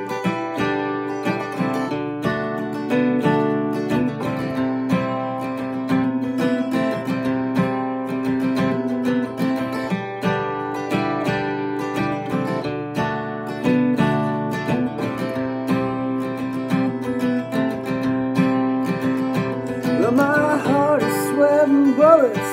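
Solo acoustic guitar, capoed, picked and strummed through an instrumental break between verses of a country song. A singing voice comes in near the end.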